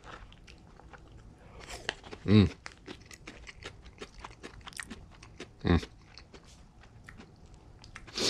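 A person chewing a mouthful of Cantonese fried rice close to the microphone, a run of small irregular clicks, with two short hummed "mmh"s of enjoyment, one about two seconds in and one near six seconds.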